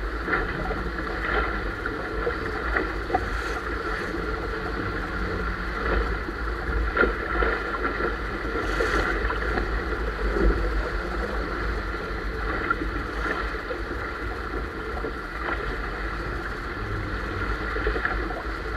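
A sailboat's hull rushing through waves under sail: continuous water and wind noise with a deep steady rumble, broken now and then by brief sharp slaps of water.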